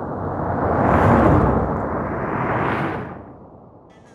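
Car drive-by sound effect layered with a sped-up copy of itself, a rushing noise that swells to a peak about a second in, surges again briefly, then fades away.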